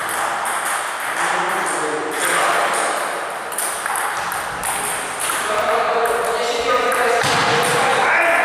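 Table tennis balls clicking off bats and table tops in rallies, several tables going at once, the hits coming in a quick irregular run and ringing in a large gymnasium.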